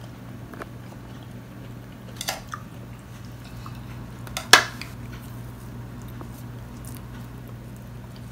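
Hands pulling apart sticky jackfruit bulbs, with small soft clicks and one sharp click about halfway through, over a steady low hum.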